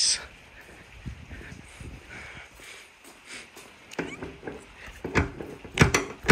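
Hand handling and pressing down the folded soft-top's cover panel on a Mercedes W208 CLK convertible to lock it in place: faint rubbing at first, then several sharp knocks in the last two seconds.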